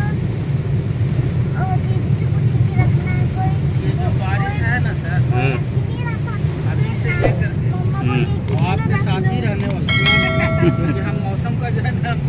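Car cabin noise while driving through heavy rain: a steady low rumble of engine and tyres on the wet road, with rain on the windshield. Faint voices talk, and near the end a steady pitched tone sounds for about a second and a half.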